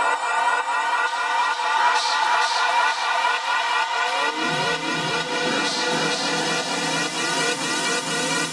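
Techno playing in a live DJ mix, built on repeating rising synth sweeps over a steady high beat. The bass is cut at the mixer and comes back in about four and a half seconds in.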